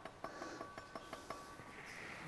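Faint light clinks and taps of glassware and bar tools on the counter, about half a dozen small ticks, with a thin high ringing note that hangs for over a second.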